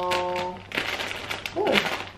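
A woman's voice holds one steady note in the first half-second, then a clear plastic clothing bag crinkles as its top is pulled open, with a short vocal sound near the end.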